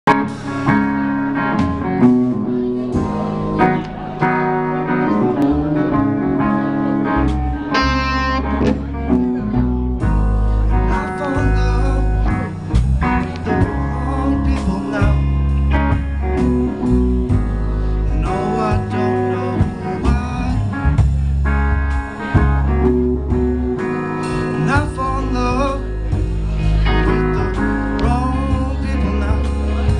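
Live rock band playing: electric guitars, bass guitar and drum kit. A thinner guitar-led opening gives way to heavy bass and drums from about eight to ten seconds in.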